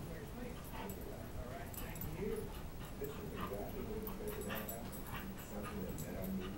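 Two dogs play-fighting, with short, faint dog vocal noises coming again and again.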